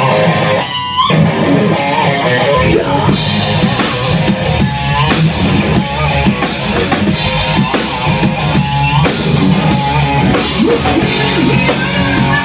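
Hard rock played by a full band in a rehearsal room: an electric guitar through a KSR Ares amplifier leads, and drum kit and bass guitar come in fully about three seconds in.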